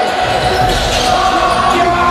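A basketball game heard live in a gym: a ball bouncing on the court and players' voices, echoing in the hall.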